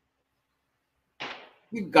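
Dead silence for about a second, then a short breathy hiss, and a man starts speaking Hindi near the end.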